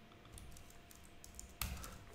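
Faint typing on a computer keyboard: a quick run of light key clicks. Near the end comes a short, louder rush of noise.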